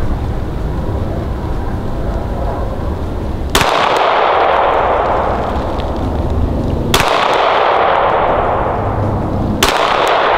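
Three pistol shots, about three seconds apart, each followed by a long echo that fades slowly.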